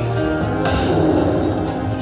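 Buffalo Link slot machine playing its bonus-round music, a steady tune, while a free spin runs.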